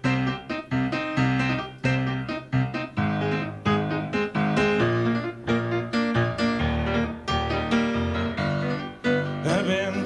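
Grand piano playing the opening chords of a slow song, a new chord struck about every half second.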